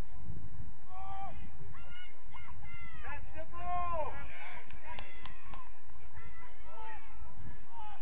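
Geese honking: a run of short, repeated calls, thickest around the middle, over a low rumble.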